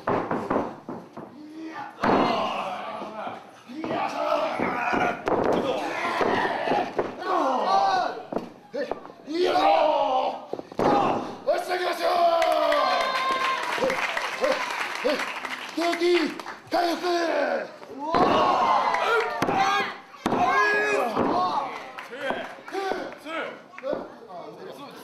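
Voices shouting and calling out over a wrestling match, with a few sudden heavy thuds of bodies slamming onto the wrestling ring mat.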